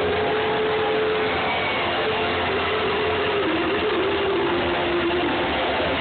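Live band with guitars, keyboard and drums playing loudly, with one long held note that wavers about halfway through.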